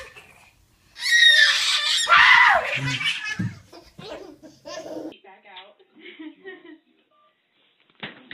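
Toddlers laughing and squealing, with an adult laughing along: a loud stretch about a second in, then shorter bursts of giggling that fade away.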